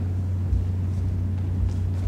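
Steady low hum, with a couple of faint dull thuds from fencers stepping on a wooden gym floor, about half a second in and again near the end.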